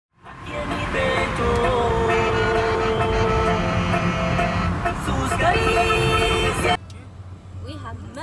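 A car driving, its low road rumble under loud, sustained pitched tones that shift every second or so. The sound cuts off abruptly near the end, leaving quieter cabin rumble.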